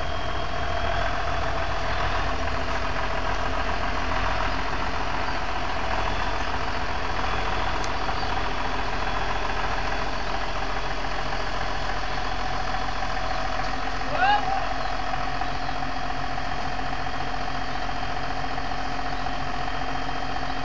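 John Deere 7505 tractor's diesel engine running steadily. A brief rising whistle-like sound comes about fourteen seconds in.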